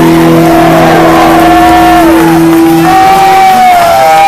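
Live rock band ending a song: a loud, distorted held chord rings out and stops about three seconds in, with a long wavering high note bending over it.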